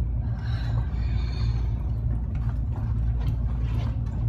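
A steady low rumble with a few faint, short knocks in the second half.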